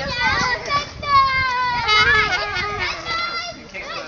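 Children's voices: several kids shouting and calling out over one another in high-pitched voices.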